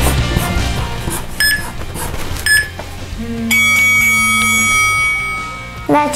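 Background rock music fades out. Two short electronic beeps about a second apart follow, then a long steady electronic tone of over two seconds: a timer signalling that the five-minute drawing time is up.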